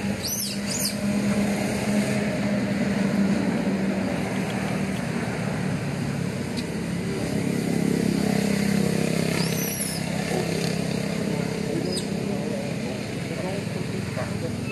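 Steady low drone of an engine running, with indistinct voices in the background and a few short, high arching chirps near the start and about ten seconds in.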